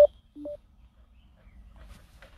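Two short electronic beeps about half a second apart, each stepping up from a low note to a higher one; the first, right at the start, is loud and the second fainter.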